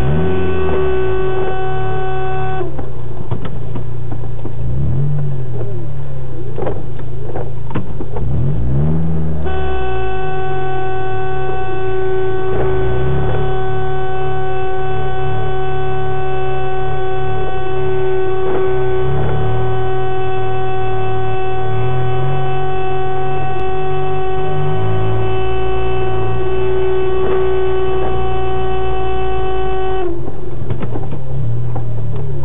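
A car horn held down in one long blast, cutting out about three seconds in and coming back near ten seconds, with a car engine revving up and down underneath.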